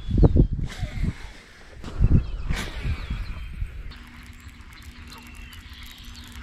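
Baitcasting reel being cranked in after a cast, a faint steady hum from about four seconds in, after knocks and thumps from handling the rod in the first half. A few small bird chirps over it.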